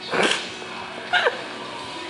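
African grey parrot calling twice: a short harsh call just after the start, then a quick whistle falling steeply in pitch about a second later.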